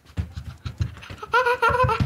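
A small child's voice making a drawn-out, wavering sound in the second half, over a run of low soft thumps about six a second.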